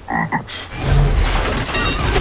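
A short frog croak, a sound effect, followed about half a second in by a loud, dense rushing intro sound with a deep rumble that carries on to the end.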